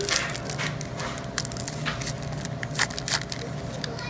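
Foil wrapper of a 2016 Bowman baseball card pack crinkling and tearing as it is ripped open by hand, with a burst of sharp crackles just after the start and more through the rest.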